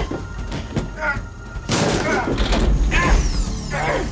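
Two men fighting hand to hand: strained grunts and cries with a heavy crashing impact about one and a half seconds in, over film score.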